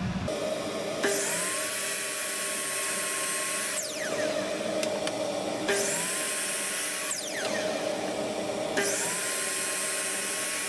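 An electric sliding miter saw (chop saw) is started three times, about a second in, near the middle, and near the end. Each time its motor whine rises quickly and holds for a couple of seconds while it crosscuts a pine drawer-box part. The first two runs wind down with a falling whine. A steady machine hum runs underneath throughout.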